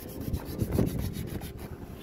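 Sandpaper being rubbed by hand over the bare sheet metal of a car's engine bay in irregular scratchy strokes, with wind buffeting the microphone.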